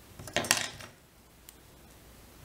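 A short clatter of small metal fly-tying tools being handled on the bench, lasting about half a second and starting just after the beginning.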